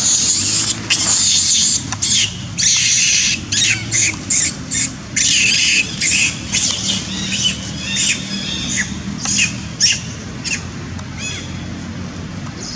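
Long-tailed macaque screaming: a run of loud, high-pitched shrieks, long ones at first and then shorter and more spaced, growing weaker in the last couple of seconds.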